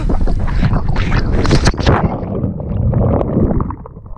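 Wind buffeting the action camera's microphone during a 40-foot cliff jump, then the plunge into the sea about two seconds in, after which the sound goes muffled and dull with the churning of water around the submerged camera.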